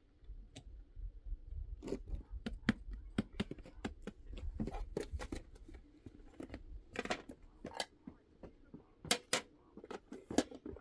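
Irregular clicks, taps and scrapes of hands working with cooking utensils and dishes, with a low rumble underneath for the first six seconds. A few louder clicks come near the end.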